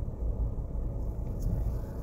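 Low, steady rumble of road traffic.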